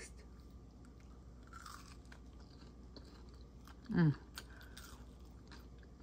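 Faint close-up chewing of a sticky Rice Krispie treat, with wet mouth smacks and small clicks, and a hummed "mmm" of enjoyment about four seconds in.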